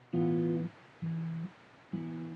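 A man humming three held notes of the song's melody, each about half a second long, with short pauses between them, as part of an acoustic guitar-and-voice cover.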